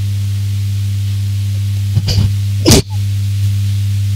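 A woman sobbing into a handheld microphone: two short, sharp catches of breath about two seconds in and just after, the second the loudest, over a steady low tone.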